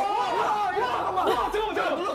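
A group of young men shouting and exclaiming excitedly over one another, their voices overlapping with no clear words.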